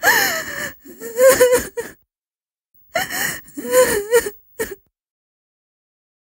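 A woman sobbing and wailing in a few high-pitched, breathy bursts with sliding pitch, falling silent a little under five seconds in.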